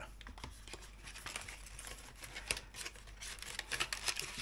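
Clear plastic blister pack of soft plastic fishing lures being handled: faint crinkling with scattered small clicks, busier near the end.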